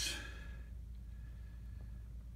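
A man's breathy exhale trailing off the end of a word, fading within about half a second into quiet room tone with a steady low hum.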